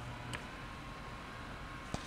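Low steady hum of a chair massager's motor that stops with a click about a third of a second in, leaving faint room noise and another light click near the end.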